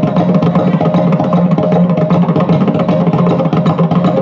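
Maddale, the two-headed barrel drum of Yakshagana, played by hand in a fast, dense run of strokes over a steady low drone.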